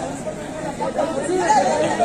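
Kabaddi spectators' crowd chatter: many voices talking and calling out at once, louder from about halfway through.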